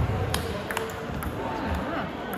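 Table tennis ball in a rally, clicking sharply off the paddles and the table about twice a second.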